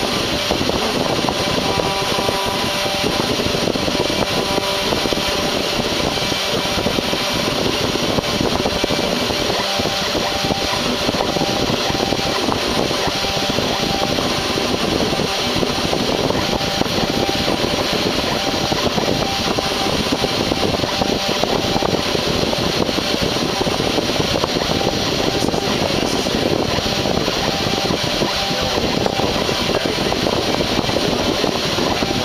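CNC router spindle running steadily at high speed while a 0.38 mm (0.015 in) three-flute tapered stub end mill mills traces into a copper-clad circuit board at 46 inches per minute. It is a continuous loud whir with faint steady tones.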